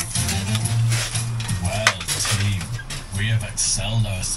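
A radio playing music with some talk in the background, with a sharp clink about two seconds in and a few lighter knocks as concrete blocks are handled.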